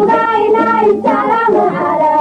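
Somali qasiido for Ramadan: a melodic singing voice over instrumental accompaniment, with a steady held low note underneath.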